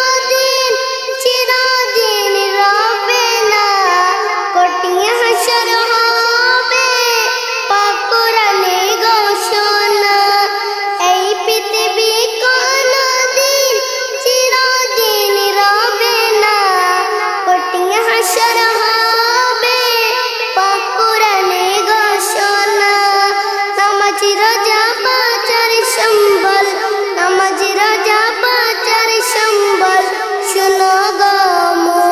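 A child singing a Bengali Islamic gazal (naat) solo in a high voice, in long, gliding melodic phrases.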